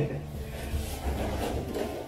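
Scraping and rustling of cardboard packaging and a large vinyl figure being handled.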